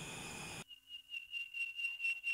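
A faint, steady high-pitched tone with a slight pulse, starting just over half a second in.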